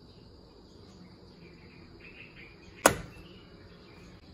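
A single sharp plastic click from the plastic mouse-trap clamp as it is handled, about three seconds in.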